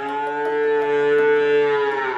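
Ankole-Watusi cow mooing: one long, steady-pitched moo that fades out at the end.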